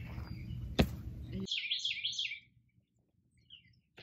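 A small songbird chirping, a quick run of about five falling notes about a second and a half in, then a few faint chirps. Before it, steady outdoor background with a single sharp knock about a second in.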